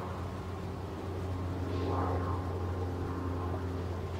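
Outdoor background: a steady low hum, with a faint passing vehicle that swells and fades about two seconds in.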